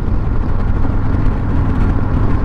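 Harley-Davidson Street Glide V-twin motorcycle cruising at about 70 mph: a steady low engine rumble mixed with wind rush and road noise.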